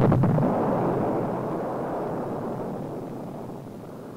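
Launch of a four-stage solid-fuel Blue Scout rocket: the motor's noise starts abruptly at full loudness at ignition and liftoff, then fades steadily as the rocket climbs away.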